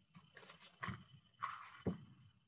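A hardcover picture book being handled and its pages moved: a few short, soft paper rustles and light knocks, with a sharper bump near the end.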